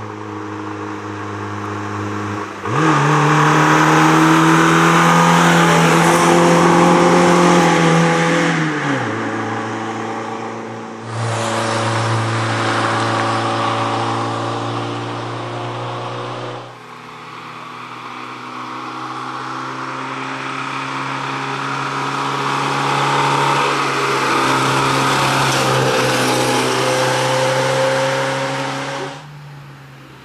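Fiat 125p rally car's four-cylinder engine running hard through its gears, the pitch rising and falling as it drives by. It is heard over several short passes cut together, the engine sound changing abruptly between them.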